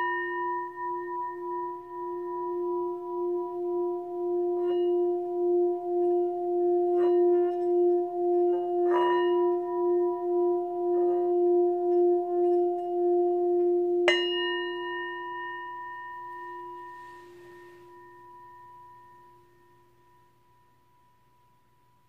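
Brass Tibetan-style singing bowl rubbed around its rim with a leather-covered mallet, holding a steady low hum with several higher overtones that wavers in loudness as the mallet circles, with light mallet clicks now and then. About fourteen seconds in the mallet strikes the bowl once, then the rubbing stops and the tone slowly dies away over the last several seconds.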